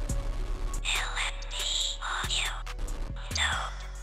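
Outro music with low, held bass notes under a whispered voice tag, with sweeping effects over it.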